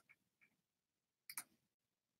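Near silence, with one faint double click a little past halfway through.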